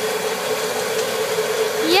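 Kettle corn machine running with its Paddle Monkey automatic stirrer turning: a steady mechanical hum with one constant tone over an even hiss.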